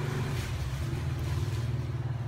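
A motor running nearby with a steady low rumble.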